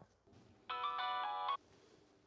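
Mobile phone ringtone: a short electronic melody of stepping notes starts about a second in and plays for under a second before cutting off as the call is answered.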